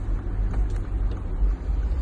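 Steady low engine and road rumble inside the cabin of a Mercedes G-Class being driven.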